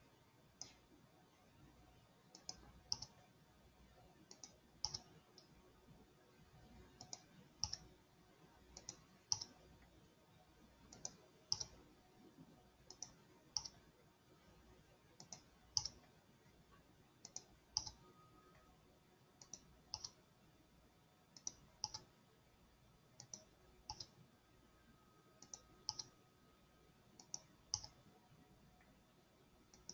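Faint clicks from computer input, in pairs a fraction of a second apart, one pair about every two seconds, over a low room hum.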